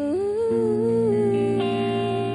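Live pop music: a woman sings a long held note that slides up near the start, over sustained electric guitar chords.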